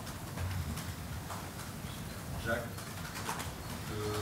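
Room noise of a press room with faint, distant voices off-microphone, a few brief murmured fragments.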